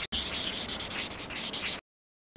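Pen scratching across paper in a run of quick scribbled strokes, stopping abruptly near the end.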